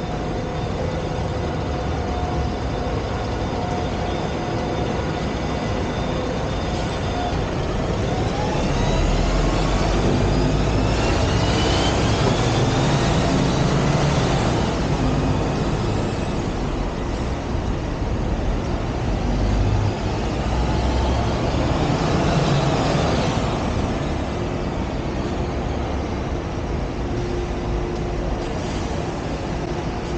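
City street traffic dominated by buses running past at the kerb. One pulls away with a rising whine about eight seconds in, and another louder pass comes a little past the middle.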